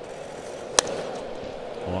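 Ballpark crowd murmur, then a single sharp crack of a bat hitting a pitched baseball a little under a second in, putting a ground ball in play toward shortstop.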